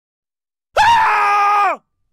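A single high-pitched screaming cry, held on one pitch for about a second after a brief rise, then dropping away as it ends.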